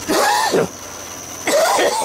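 A man coughing twice, one cough at the start and another near the end.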